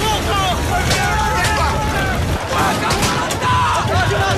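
Battle din: many men shouting and yelling at once over a steady low rumble, with a few sharp cracks of gunfire about one second and three seconds in.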